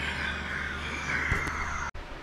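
A man's long, breathy sigh, cut off suddenly near the end.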